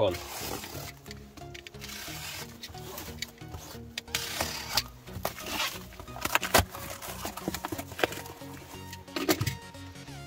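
Plastic stretch-wrap being pierced and torn off a cardboard box, with crinkling and sharp tearing sounds that come thicker in the second half, then the cardboard flaps being opened, over background music.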